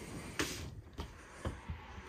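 Light clicks and knocks from the framed screen panels of a toy hauler's three-season rear door being pulled closed. The clearest knock comes about half a second in, followed by a few fainter clicks.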